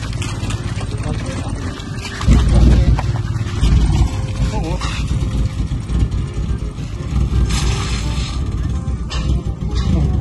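Small Volkswagen pickup's engine catching on a push start and running as the truck rolls away, over a continuous low rumble that gets much louder about two seconds in.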